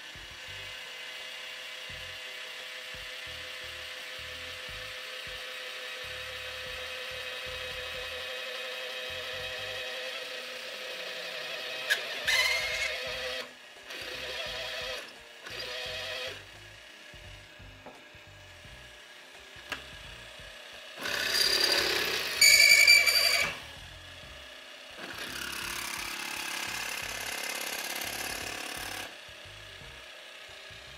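Drill press running a step-tipped twist drill bit into a steel plate: a steady motor whine while it cuts, then several louder bursts of metal-cutting noise. The loudest comes about two-thirds of the way in and carries a sharp squeal.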